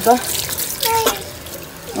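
Tap water running into a stainless steel kitchen sink while a sponge wipes the foamy basin, rinsing out cream cleaner.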